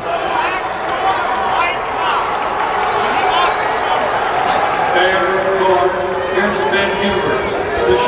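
Spectators' voices shouting and cheering at once in a large indoor fieldhouse, a steady din of overlapping voices urging the runners on in the closing laps of a race.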